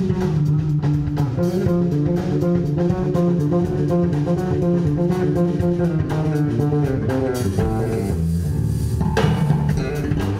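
Live electric blues-rock trio playing: a bass guitar carries a melodic line of held notes over drum kit and electric guitar. About three-quarters of the way through, the sound thins out for a moment, then the full band comes back in.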